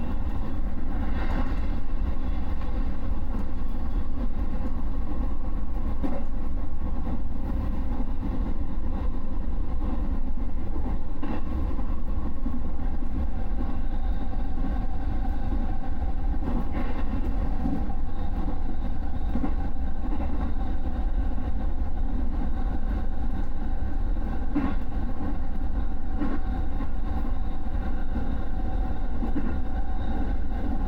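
Electric commuter train running steadily on the rails, heard from inside the front car: a continuous low rumble with a steady motor hum and occasional faint ticks from the wheels.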